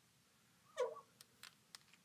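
A brief murmured vocal sound, then a few light clicks of a marker cap being handled.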